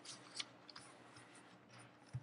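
Near silence over a faint steady hum, with a few short, faint rustles and clicks of papers being handled at a pulpit, the loudest about half a second in.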